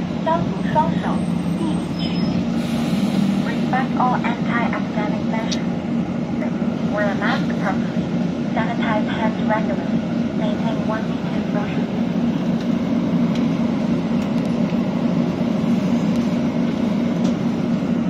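A city bus in motion heard from inside the passenger cabin: a steady low drone of engine and road noise that holds even throughout, with brief snatches of voices over it.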